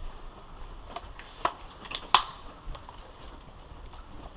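Three short, sharp clicks over quiet room noise, the loudest about two seconds in.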